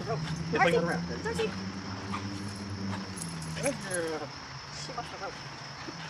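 Short bursts of speech from a video played back at double speed, over a steady high chirring of crickets.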